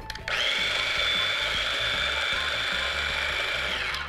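Small single-speed electric food processor running with a steady motor whine. It starts about a quarter second in and spins down near the end as it is switched off.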